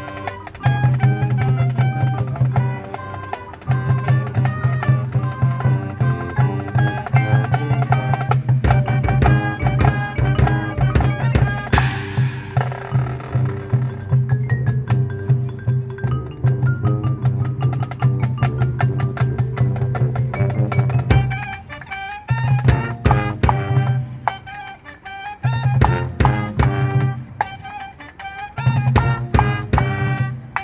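Marching band's front ensemble playing mallet percussion (marimba and xylophone) over a held low note that drops out a few times near the end, with a bright crash about twelve seconds in.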